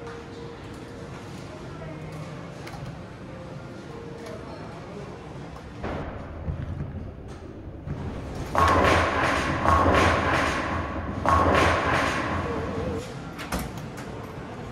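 Claw machine being played against a low arcade hum, with a few knocks as the claw drops a plush into the prize chute about eight seconds in. This is followed by several seconds of loud, piercing celebratory noise that cuts out and restarts three times.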